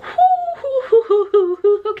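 A woman laughing: a drawn-out higher note, then a quick run of short, pitched laughs at about four a second.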